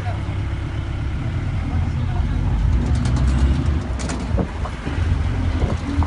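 Truck engine running under load with road noise, heard from the open cargo bed of the moving truck; a sharp knock or rattle about four seconds in.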